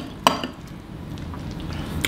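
A metal fork clinks twice against a glass plate near the start, then softer sounds of noodles being stirred and food being eaten.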